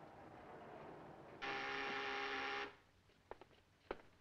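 An electric buzzer sounds once, a steady rough buzz of a little over a second that cuts in and off sharply, after a soft rising hiss; a few light clicks follow near the end.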